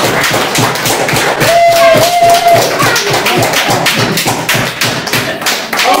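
Ukulele strummed in a quick, steady rhythm while an audience claps along, with one short held sung note about a second and a half in.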